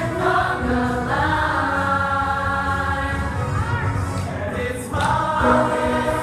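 A large group of young voices singing a musical-theatre number in unison, with long held notes and a brief break just before the end.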